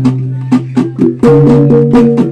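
Sumbanese tabbung gong music from Wanukaka, played for a mourning: hanging gongs ringing in an interlocking pattern of low sustained tones, under rapid, sharp drum strikes.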